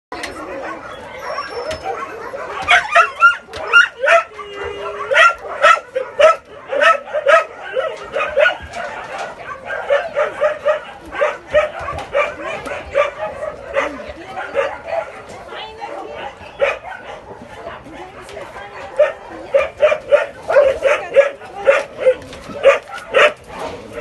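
Dogs barking and yipping over and over, short sharp barks coming a few per second, with a thinner stretch in the middle.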